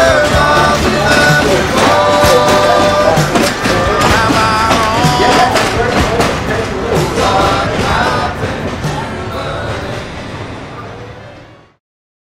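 Background music from a song, fading out near the end into silence.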